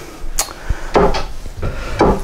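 Handling noise from a capacitance meter and its test leads being moved on a wooden table: a few short clicks and knocks mixed with rubbing.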